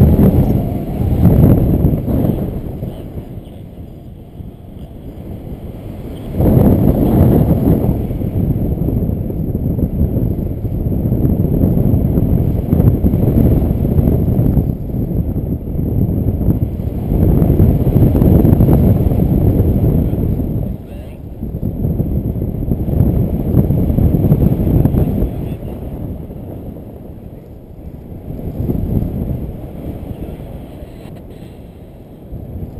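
Wind rushing over the microphone during a paraglider flight: a loud low rumble that swells and fades in gusts, easing toward the end as the glider comes down to land.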